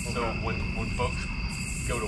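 Crickets chirping in a steady, unbroken high trill, with voices talking at a distance.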